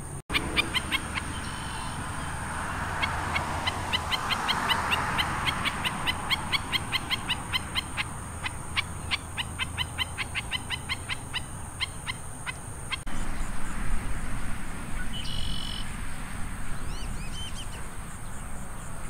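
Black-necked stilt calling a long series of sharp, high notes, about three a second, which stops abruptly about two-thirds of the way through. A few fainter calls of other birds follow.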